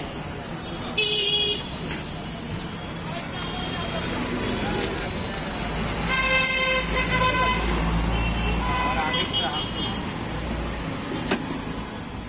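Street traffic noise: a vehicle horn sounds briefly about a second in and again, longer, around six seconds in, while a vehicle rumbles past, over steady background chatter.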